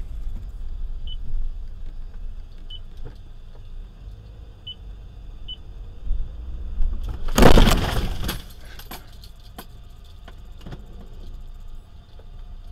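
Road and engine rumble inside a moving car, with a few faint short beeps, then a sudden loud crash about seven seconds in, lasting about a second, followed by scattered clinks and rattles.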